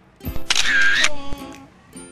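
Edited-in transition sound effect: a click like a camera shutter, then a short musical sting that rings out and fades about a second and a half in.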